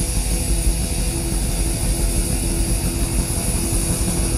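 Heavy metal band playing live with no vocals: distorted electric guitar, bass and drums, loud with a heavy, muddy low end as heard from the audience.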